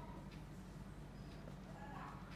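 Faint squeaks and taps of a marker writing on a whiteboard, a few short strokes over a low steady room hum.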